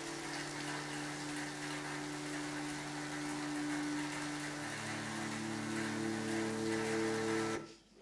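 Steady falling rain over soft, sustained music chords; the held notes change about two-thirds of the way through, and rain and music stop suddenly near the end.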